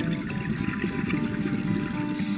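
A rush of scuba exhaust bubbles gurgling and popping past an underwater camera housing, over faint background music.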